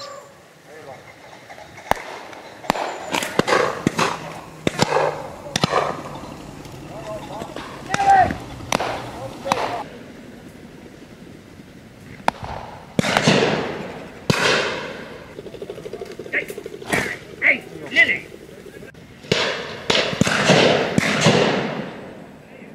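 Shotgun shots fired at driven pheasants, a dozen or more sharp reports spaced unevenly, some in quick pairs, each trailing off in a short echo.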